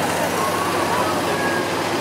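Engine of a vintage Chevrolet pickup truck running steadily as it drives past, with voices in the background.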